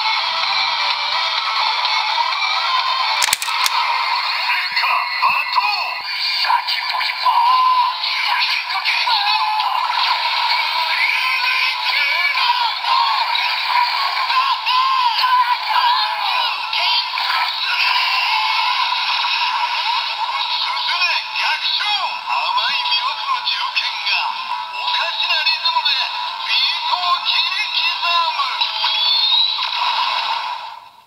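Kamen Rider Saber DX Onjuuken Suzune toy sword, with the DX Primitive Dragon Wonder Ride Book attached, playing its electronic announcement voice and music through its small built-in speaker. The sound is thin, with no bass.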